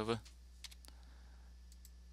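A few faint, scattered computer keyboard keystrokes over a steady low electrical hum.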